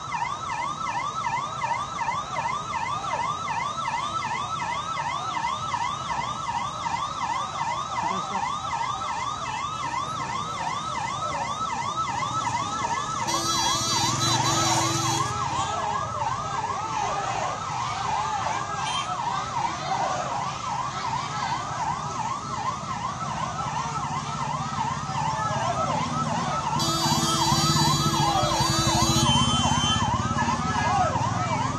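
Police vehicle siren wailing in a fast rise-and-fall, about three sweeps a second, without a break. Twice, about thirteen seconds in and again near the end, a steady lower tone blasts for about two seconds over it.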